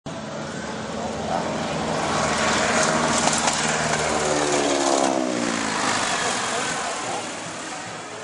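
Boeing Stearman biplane's radial engine and propeller growing louder as the aircraft flies low overhead. The pitch drops about four to five seconds in as it passes, and the sound fades as it climbs away.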